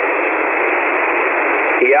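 Steady hiss of band noise from a single-sideband ham radio receiver tuned to 40 metres, heard on an open frequency between transmissions. The noise is cut to the narrow voice passband, and a man's voice comes in near the end.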